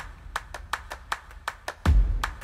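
Intro music with a quick, even beat of sharp clap-like percussion, about five hits a second, over a low bass, with a deep bass hit near the end.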